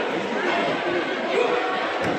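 Indistinct chatter of many voices talking at once, with no single speaker standing out.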